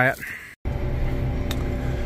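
Diesel engine of a farm machine running steadily, heard from inside its cab: a low drone with a few steady tones over it, starting abruptly just after the start.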